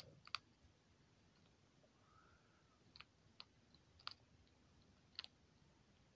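Baby skunk trying to chew hard dry kibble: a few sharp, quiet clicks and cracks as the pieces break between its teeth, spaced irregularly about a second apart over near silence.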